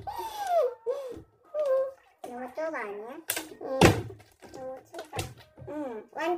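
A partly filled plastic water bottle thunking down on a table three times: twice close together about halfway through, then again near the end. Excited voices with rising and falling pitch and laughter run between the thunks.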